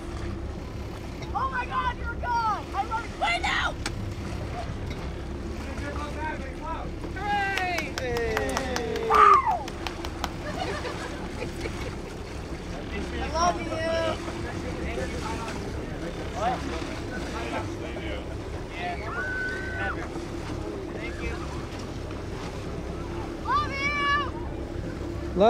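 Indistinct voices talking now and then over the steady low hum of a motorboat engine, with wind and water noise.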